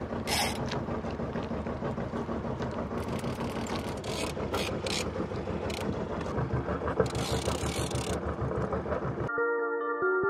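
Rapid, steady mechanical clicking with several short hissing rushes, cutting off suddenly near the end as soft mallet-toned music begins.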